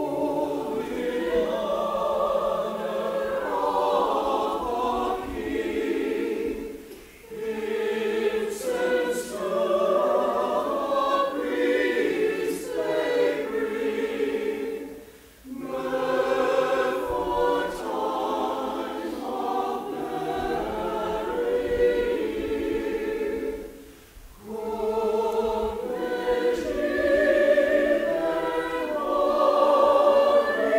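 Mixed church choir singing in phrased lines, with short pauses about 7, 15 and 24 seconds in.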